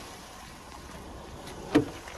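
Steady outdoor background hiss, then a sharp click near the end as the driver's door handle of a Vauxhall Insignia is pulled to unlatch the door.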